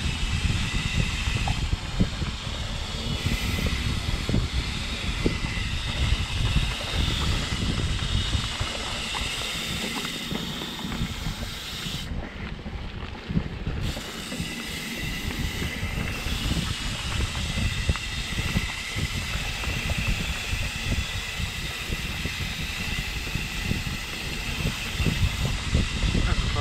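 Ride noise from a mountain bike rolling fast down a dirt singletrack: wind buffeting the camera microphone over a low rumble of tyres on dirt, with many small knocks and rattles from bumps. The rumble eases somewhat from about ten to fifteen seconds in.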